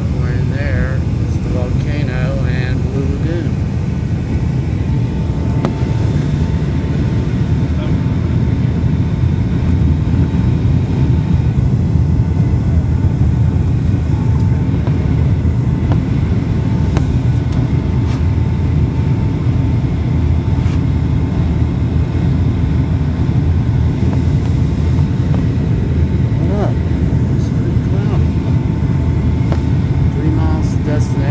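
Steady low roar of an airliner cabin in flight on descent: engine and airflow noise heard from a window seat. A faint steady whine joins it a few seconds in.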